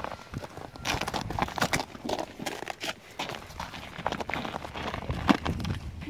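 Footsteps of two people crunching and scraping over icy, snow-dusted pavement, an irregular run of steps with one sharper crunch about five seconds in.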